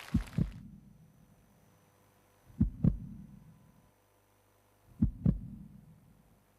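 Heartbeat sound effect over the stage speakers: three pairs of deep low thumps, lub-dub, about two and a half seconds apart, with a faint steady hum between. It opens a song.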